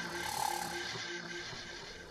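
Electronic theme music of a TV newscast's closing title sequence, fading out, with a short note repeating about twice a second.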